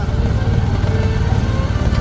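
Motorcycle engine of a motorcycle-converted becak (motorised passenger trike) running steadily as it carries riders along.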